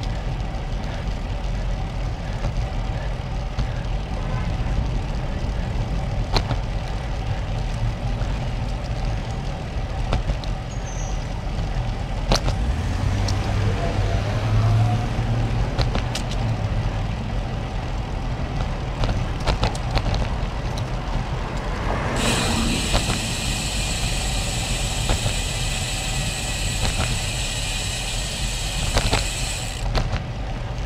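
Wind rushing over the camera microphone and the Cervélo Caledonia road bike's tyres rolling on asphalt at a steady cruise, with scattered sharp clicks from bumps in the road. About two-thirds of the way through, a steady high hiss joins in and stops near the end.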